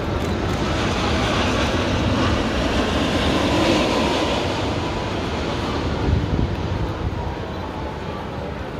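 A passing vehicle's rushing rumble that swells to a peak about four seconds in, then fades away.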